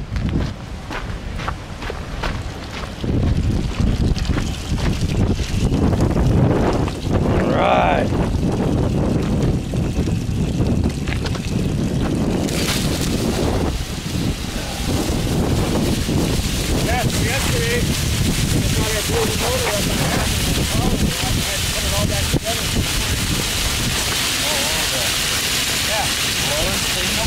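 Wind buffeting the microphone, with handling noise. About halfway a steady hiss sets in suddenly and keeps on: water sizzling on a hot, freshly poured doré bar as it cools and steams.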